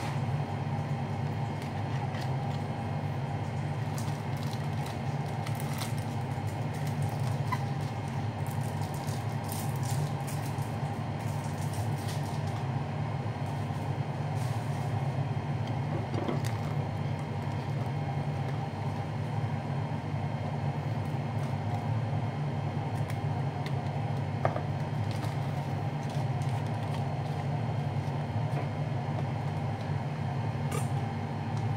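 Steady low machine hum, like a running motor, holding level throughout. Scattered light clicks and taps from hands handling food and wrappers on the counter.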